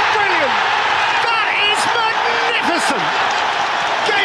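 Football stadium crowd cheering a goal: a loud, steady roar with individual shouts rising and falling through it.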